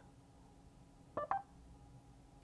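Two short electronic beeps in quick succession about a second in, from the car's MBUX voice assistant, sounding between the spoken command and its answer.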